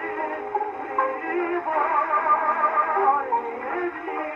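Acoustic horn gramophone playing a reproduction pressing of an early Berliner disc: a tenor sings an opera aria in Russian with strong vibrato, with a long held note in the middle. The sound is thin, with no deep bass and no bright treble, as is typical of an acoustic recording played through a horn.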